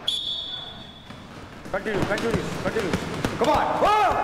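Boxing gloves striking a heavy punching bag in a quick run of thuds starting about two seconds in, mixed with short shouted calls of encouragement ("Come on!").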